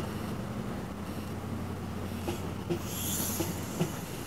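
Mark 3 coaches of a departing InterCity 125 (HST) rolling past at low speed, with wheels clicking over rail joints in an uneven rhythm. A brief high hiss or squeal comes about three seconds in.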